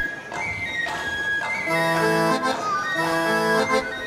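Cumbia intro on accordion: held chords played in short phrases, starting a little before halfway in, after a thin, high held tone in the opening moments.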